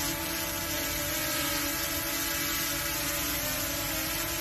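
DJI Mini SE quadcopter hovering on Master Airscrew Stealth propellers: a steady multi-tone propeller hum.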